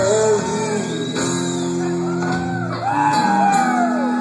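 A live rock band of electric guitar, bass guitar and drums playing a slow ballad, heard from the crowd in a large hall. The guitar plays fills with notes that bend up and down over sustained chords.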